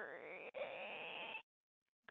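Creaking door sound effect: one long, strained creak that rises in pitch and then holds, with a brief catch about half a second in, ending after about a second and a half.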